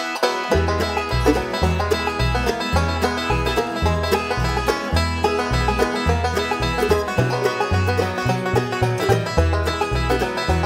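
Bluegrass band playing an instrumental intro. The banjo is prominent over acoustic guitar and mandolin, with an upright bass playing a steady line of alternating notes.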